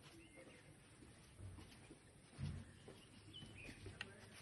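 Near silence: faint outdoor ambience with a few faint bird chirps and a brief soft low sound about halfway through.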